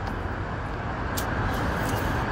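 Steady outdoor background noise, an even rumble and hiss such as distant street traffic or wind on a phone microphone, with one short click a little after a second in.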